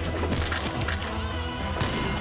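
Action-film trailer soundtrack: a bass-heavy music score with fight sound effects, a few sharp hits and a splintering crash, the loudest hit near the end.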